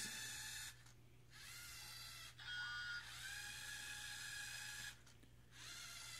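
LEGO Mindstorms EV3 robot's large motors whining as it drives forward and spins. The sound comes in four runs with short pauses between, each rising in pitch as the motors spin up.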